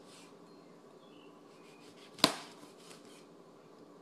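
A chef's knife slicing through an orange, its blade knocking the work surface once sharply a little over two seconds in, with a few faint ticks after it.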